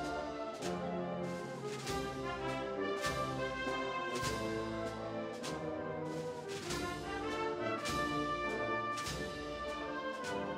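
Spanish wind band playing a Holy Week processional march: brass-led melody over sustained chords, with percussion strokes about once a second.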